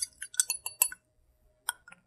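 Metal bar spoon clinking lightly against a glass while a drink is stirred: a quick run of small clinks in the first second, then a couple more brief clicks near the end.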